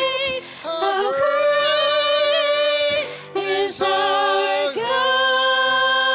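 Two women singing a worship song into microphones over soft keyboard accompaniment. The phrases are held long with vibrato and break for breaths about half a second, three seconds and five seconds in, with a long held note near the end.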